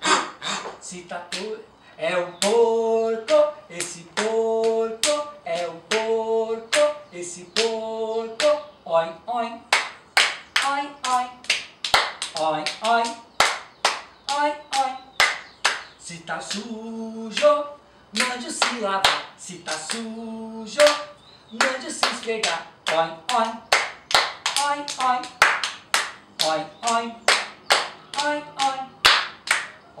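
Hand claps and body-percussion slaps in a quick, steady beat, mixed with short, flat-pitched squeaks from squeezed rubber pig toys. Voices chant "oi, oi, oi" on the beat near the end.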